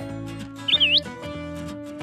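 Background music with steady sustained notes. About two-thirds of a second in comes a short, high chirp-like whistle that dips and then rises.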